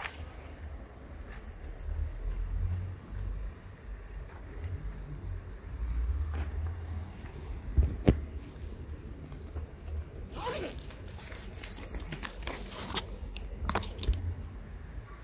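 Close handling noise while a bag is opened and a plastic plate is got out: a zip-like rasp and crisp rustling and scraping about ten seconds in and again near the end, a single knock about eight seconds in, and a low rumble on the microphone throughout.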